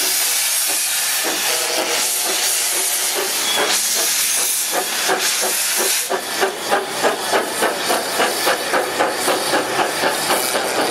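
1908 GWR steam rail motor No. 93 pulling away, with a loud, steady hiss of steam. From about six seconds in, regular exhaust chuffs come through at about three a second, quickening slightly as it gathers speed.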